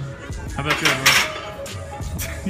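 A loaded barbell is set back onto a steel squat rack, with metal clanking and the plates rattling. The clatter peaks about a second in.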